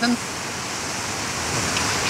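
Steady rush of a river pouring over rocks in rapids.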